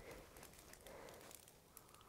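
Near silence: faint room tone with a few tiny ticks.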